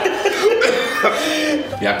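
Men's wordless vocal reactions: coughing and chuckling, a response to the stench of freshly opened surströmming (fermented Baltic herring).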